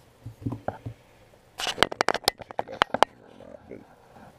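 Handling noise as the quadcopter and camera are moved in close: a few faint knocks, then a quick burst of clicks and rustles in the middle.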